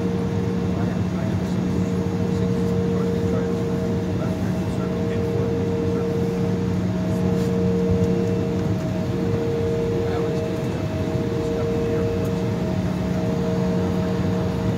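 Cabin noise of an Embraer E-175 taxiing, heard from a seat beside the wing: its GE CF34 turbofans running steadily at taxi power, a low hum with a higher tone that drops out briefly every second or two.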